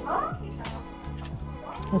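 Background music with a steady, repeating bass line, and a brief gliding vocal-like sound just after the start.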